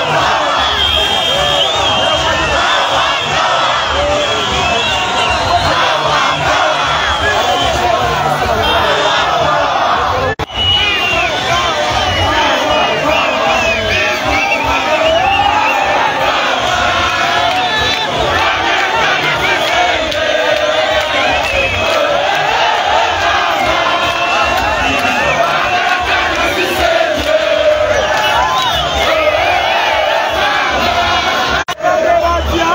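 Large crowd shouting and cheering, many voices overlapping in a continuous din, with a momentary break about ten seconds in.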